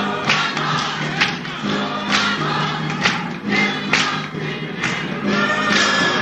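Gospel choir singing with instrumental accompaniment: a steady bass line and a beat about once a second.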